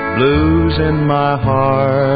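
Country band playing a song's instrumental introduction, with guitar notes that slide up in pitch near the start.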